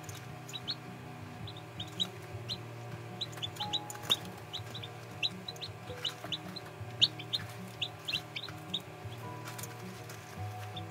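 Several newly hatched chicks peeping in short, high cheeps, a few each second, with light ticks of beaks pecking at a steel feed dish. Soft background music runs underneath.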